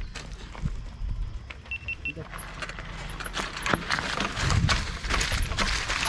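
Mountain bike setting off down a rocky dirt trail: tyres crunching over stones and the chain and frame rattling. The clatter gets denser and louder about two seconds in.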